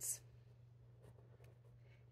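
Faint rustle and scratch of felt figures being handled and pressed onto a flannel board, over a steady low hum.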